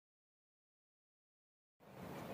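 Silence, with faint room tone starting near the end.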